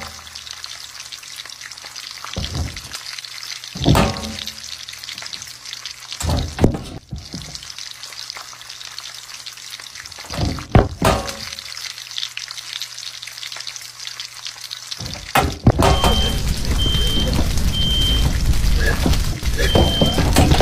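Rustling and knocks from someone rummaging through a kitchen trash can for discarded packaging, over a steady low hum. Near the end a louder hissing noise sets in, with short high beeps about once a second.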